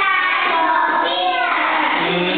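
A group of young children chanting together in unison, their voices blending into one continuous singsong.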